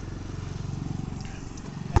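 A steady low engine hum, with one sharp bounce of a ball on asphalt just at the end.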